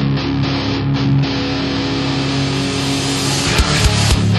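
Hardcore punk band recording: distorted electric guitars ring out sustained chords, and hard drum hits come in near the end.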